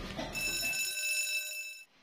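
A steady, high-pitched electronic ringing tone sounds for about a second and a half, then cuts off suddenly.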